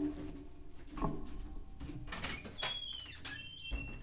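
A person getting up and leaving the room: a sharp knock at the start and another about a second in, then a run of short, high, falling squeaks from a door being opened.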